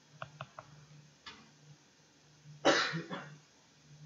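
A man coughs once, loud and brief, about two-thirds of the way in. Before it come a few light taps of a pen on a tablet screen while he writes. A faint steady hum runs underneath.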